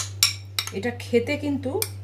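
A spoon clinking and scraping against a glass bowl as a grated-vegetable filling is stirred, with sharp clinks at the start, just after, and near the end. A voice speaks briefly in the middle over a steady low hum.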